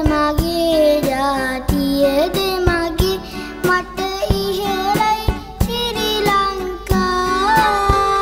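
A boy singing a Sinhala song over instrumental backing, the melody gliding between held notes, with drum hits through it.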